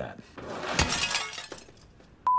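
A crash of breaking glass that peaks sharply under a second in and fades away over the following half-second or so.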